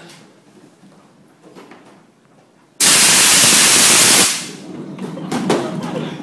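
A large fire extinguisher with a modified nozzle discharges a loud blast of gas. It starts abruptly nearly three seconds in, holds steady for about a second and a half, then trails off, with a few knocks as it fades. The blast is the jet's thrust pushing the rider's wheeled cart.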